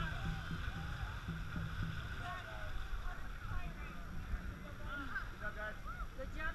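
Faint, indistinct voices of people on the water over a steady low rumble of wind and water on a boat-mounted camera.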